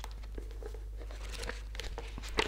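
Faint rustling and crackling of paper being handled, with small scattered clicks: the pages of a paperback book being opened and leafed through.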